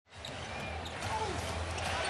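Arena crowd noise with a basketball being dribbled on the hardwood court, shown as a few faint knocks.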